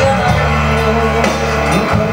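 Live rock band playing: electric guitars, bass and drum kit, amplified through the stage sound system.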